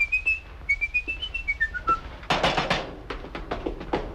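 A person whistling a short tune, a run of stepped notes that ends in a falling glide, followed by a quick run of sharp taps and clatter.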